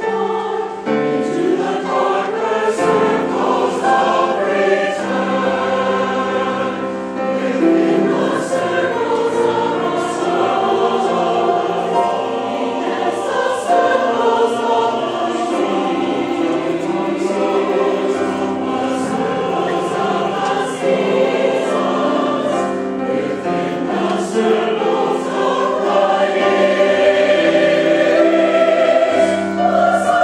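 Large mixed choir of men and women singing in long held notes, growing a little louder near the end.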